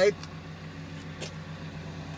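A car engine idling steadily, a low even hum, with one faint click about a second in.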